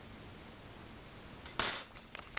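A metal teaspoon giving one sharp clink with a short high ring about one and a half seconds in.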